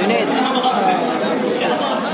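Men's speech with chatter from a crowd.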